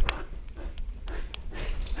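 A dog running through the house after a shower, heard from a camera strapped to its back: irregular footfalls and sharp clicks, a loud thump right at the start, over a low rumble of the jostled camera mount.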